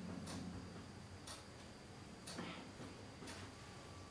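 A clock ticking faintly, about once a second, over a low room hum.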